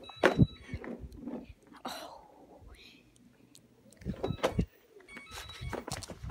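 A series of thumps and knocks as a person falls while attempting a riding trick and the phone filming is jostled: one loud knock right at the start, another cluster about four seconds in, and a few more near the end, with rustling handling noise between.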